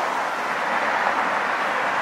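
Steady noise of city road traffic: cars and a scooter passing close by on a multi-lane street, a continuous rush of tyre and engine noise.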